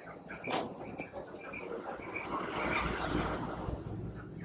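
Caged Japanese quail giving a string of short, high peeps, with a sharp click about half a second in.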